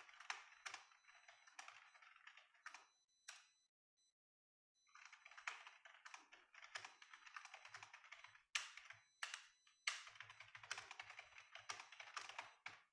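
Computer keyboard typing, faint: quick runs of keystrokes with a short pause about four seconds in, and a few sharper single key strikes in the second half.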